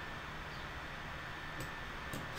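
Steady low hiss of room tone with a faint high steady whine, and one faint click near the end.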